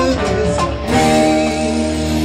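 Live rock band with acoustic and electric guitars and bass playing the last bars of a cover song; about a second in, a closing chord is strummed and left to ring.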